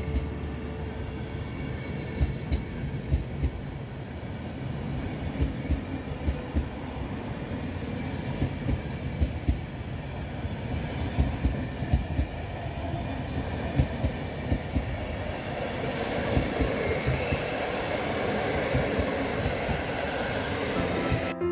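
PKP Intercity passenger coaches rolling past, their wheels clacking over rail joints in irregular knocks, often in close pairs, over a steady rumble.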